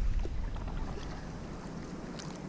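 Wind rumbling on the microphone over water moving around a paddle board as it travels; the rumble eases off during the first second.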